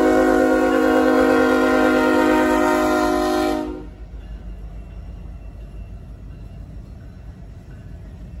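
Diesel locomotive air horn sounding one long, steady chord of several notes, cutting off a little under four seconds in, followed by the low rumble of the train rolling past.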